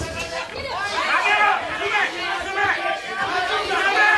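Several people shouting over one another at ringside during a kickboxing bout, a dense babble of calls with no single clear voice.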